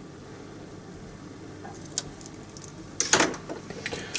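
Quiet room tone with a single light click about halfway through, then a brief scraping rustle and a few small clicks near the end as gloved hands handle parts inside an opened inkjet printer.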